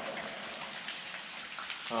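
A low, steady hiss of background noise with no clear events, of the kind rain or running water makes.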